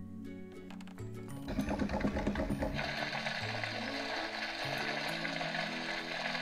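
Small geared motor of a Walk and Glow Bruni plush toy whirring with rapid clicking as it walks, starting about a second and a half in and turning into a steady whirr from about three seconds in, over soft background music.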